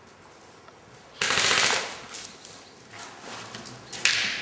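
A short burst of rapid fire from an airsoft gun on full auto, starting suddenly about a second in and lasting under a second before trailing off. A few fainter knocks follow.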